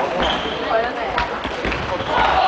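Table tennis ball being struck by paddles and bouncing on the table during a rally, heard as a few sharp clicks, over a background of voices in a large hall.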